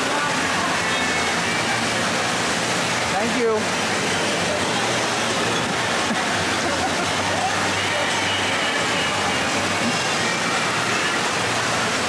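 Steady wash of falling and splashing water with faint voices mixed in: the constant background noise of an indoor waterpark.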